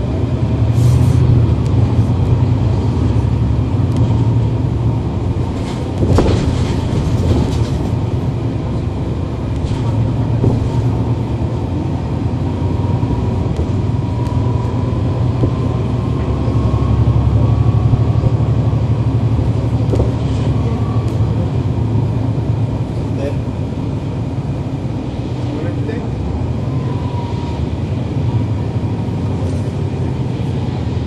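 Cummins ISL9 diesel and ZF Ecolife automatic drivetrain of a NABI 40-foot transit bus, heard from on board running along with a deep, steady rumble. A sharp knock comes about six seconds in, and a thin whine rises slowly in pitch through the middle of the stretch.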